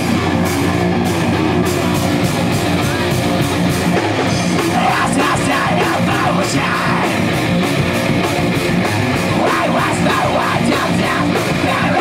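Live metal band playing loud, with electric guitars, bass and drums keeping a steady beat. A vocalist comes in on the microphone about five seconds in.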